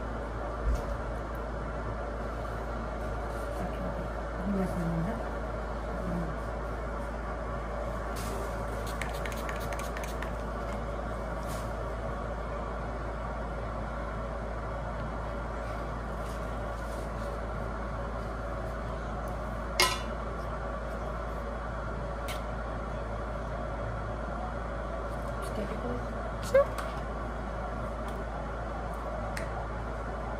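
Steady room hum with a few light clicks and clinks of blood-draw equipment being handled. There is a sharp click about twenty seconds in and another a few seconds before the end. A child's voice is faintly heard about four to six seconds in.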